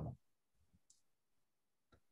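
Near silence, broken by a couple of faint, brief clicks.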